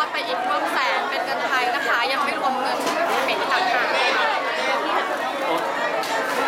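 Several people talking at once: a steady chatter of overlapping voices with no single speaker standing out.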